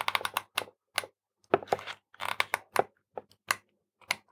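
Irregular clusters of sharp clicks and clacks from a hot glue gun, its trigger squeezed to lay glue onto the back of a circuit board.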